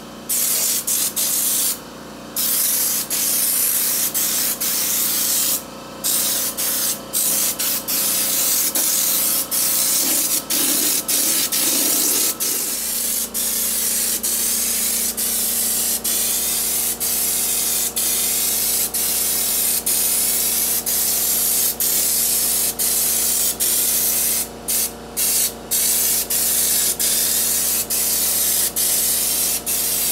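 Compressed-air spray gun laying on Raptor bed-liner coating: a loud, steady hiss of air and spray, broken by a few short pauses when the trigger is let off. The pauses come near the start, a few seconds in, and in a quick cluster a few seconds before the end.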